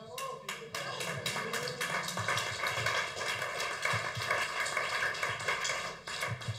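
Audience applauding, many hands clapping. It builds up within the first second and dies down near the end.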